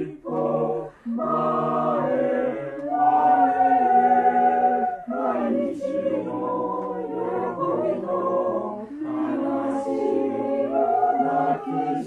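Mixed-voice choir singing in four parts, holding sustained chords, with short breaths about half a second and a second in and a fuller, louder passage from about three seconds.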